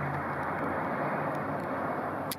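Steady road and vehicle noise, with a low engine hum that fades out just after the start.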